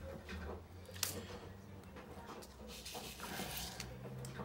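Faint clicks and taps of a diamond-painting drill pen and small resin drills against the canvas and plastic tray, with one sharper click about a second in, over a low steady hum.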